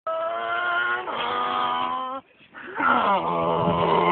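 Small motorcycle engine running at a steady high pitch, dropping in pitch about a second in and cutting off after about two seconds. After a brief pause comes a louder, wavering pitched sound.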